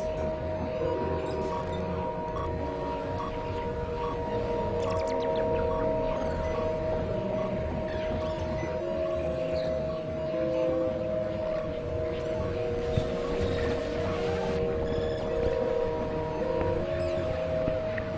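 Ambient music of a few held, steady tones that shift to new pitches every few seconds, with no drum beat.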